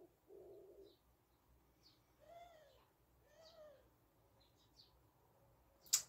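Quiet room tone with a few faint bird calls: two short rising-and-falling calls about a second apart in the middle, and faint high chirps around them.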